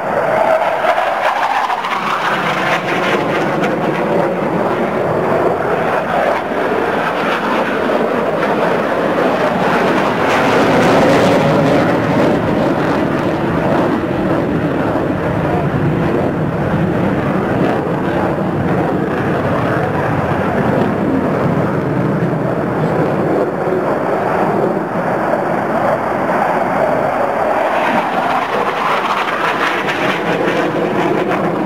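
Jet engines of a BAE Hawk Mk120 and Saab Gripen fighters manoeuvring overhead: a continuous rushing jet noise that swells and fades, its pitch gliding slowly up and down as the aircraft turn and pass, loudest about eleven seconds in.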